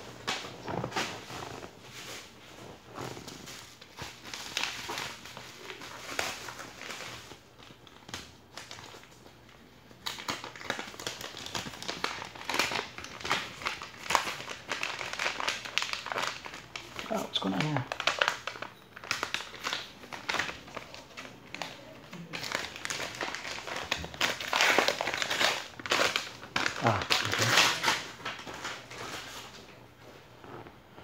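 Paper envelopes and cardboard mailers rustling and crinkling as they are handled and opened, in irregular bursts of crackling that grow louder about ten seconds in.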